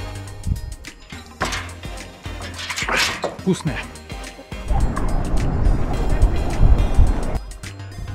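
Water pouring out of a metal well bucket for about three seconds, starting about halfway through, over background music. Before it, a short voice sound as the bucket is drunk from.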